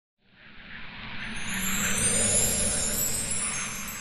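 Intro sound effect for an animated logo: a whooshing swell that fades in over the first two seconds and then eases slightly, with shimmering high tones on top.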